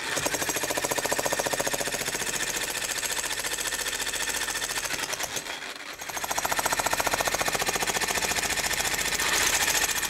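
Electric jackhammer chipping and breaking up asphalt paving in a fast, steady hammering. It starts abruptly, eases off for a moment a little past halfway, then hammers on.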